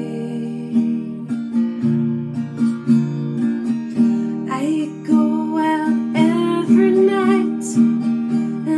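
Steel-string acoustic guitar strummed slowly and steadily in chords, with a woman singing a slow, wavering melody over it from about halfway through.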